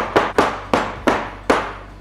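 Round metal cake pan full of batter knocked repeatedly on a wooden tabletop: about five sharp knocks a few tenths of a second apart, each dying away quickly. The knocking settles the batter and drives out trapped air bubbles before baking.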